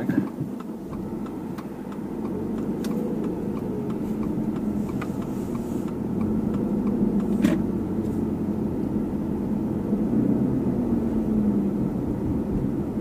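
Car engine and road noise heard from inside the cabin while driving slowly, a steady low rumble with a few light clicks.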